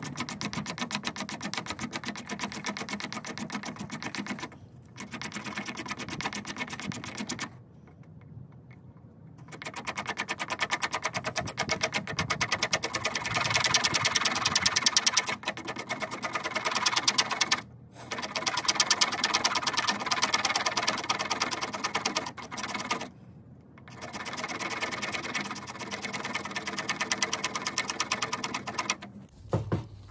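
Rapid, even scraping of fatwood (resin-rich pine knot) with the edge of a broken beer-bottle shard, shaving it into fine dust for tinder. The strokes run in quick bursts, with short pauses about four and a half seconds in, around eight seconds and twice later, and stop just before the end.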